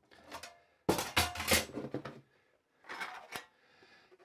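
A plate holder being opened and the exposed tintype plate taken out. A run of clicks, scrapes and light clatter comes about a second in, with a few more clicks near the end.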